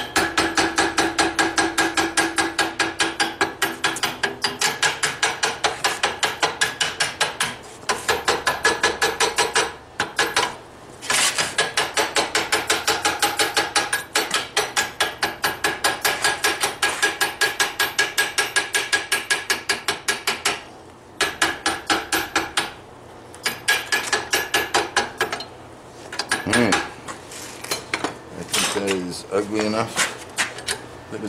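Hand hammer striking a small punch held against a forged railroad-spike lion head in a vise, texturing its edges. The blows come quickly and evenly, about four to five a second, in runs broken by short pauses, and the steel rings with each strike.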